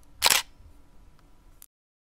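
Camera shutter click sound effect: one sharp, short burst about a quarter second in, over a faint low rumble and hiss that cuts off suddenly near the end.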